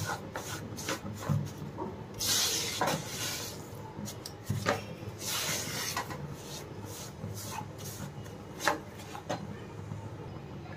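Spatula stirring and scraping roasting gram flour (besan) in ghee around a nonstick kadai: irregular scraping strokes with a few light knocks against the pan.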